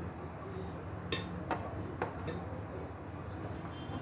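A spoon clicking lightly against the dishes, about four short clicks, as minced meat is spooned from a plastic tub into an earthenware casserole, over a steady low kitchen hum.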